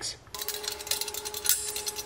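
Light metallic clinks and clicks from steel parts at a 20-ton hydraulic press, over a steady faint hum.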